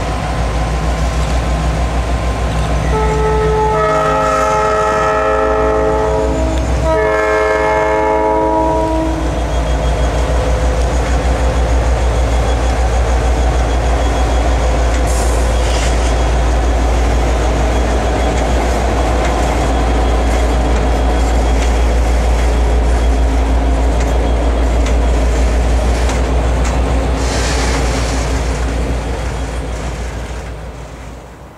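Norfolk Southern GP59 and GP38-2 diesel freight locomotives passing close by, the lead unit sounding its several-note air horn in two long blasts a few seconds in. The diesels' low rumble and the rolling of the freight cars go on throughout.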